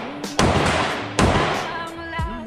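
Two gunshots about a second apart, each a sharp crack with a short decaying tail, over rap music with vocals.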